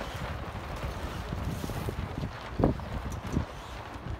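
Wind buffeting the microphone, a steady low rumble, with two short knocks in the second half.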